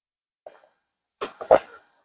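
A person coughing twice in quick succession, about a second in, from a throat gone slightly hoarse.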